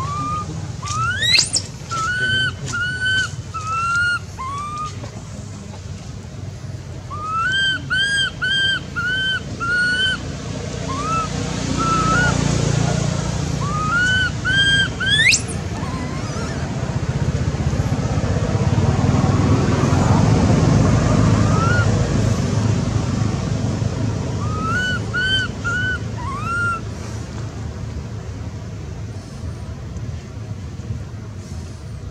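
High-pitched animal calls: short arched cries repeated in runs of three to five, with two sharp upward-sweeping cries. A low rumble swells and fades twice underneath.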